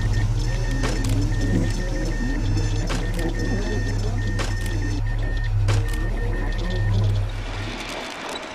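Sound-design track of working machinery: a steady low electrical hum under runs of short high beeps like telegraph signals, with occasional sharp clicks. The hum fades out shortly before the end.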